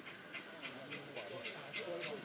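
Distant LB&SCR Terrier 0-6-0 steam tank locomotive chuffing steadily as it approaches, about three to four breathy exhaust beats a second. People murmur in the background.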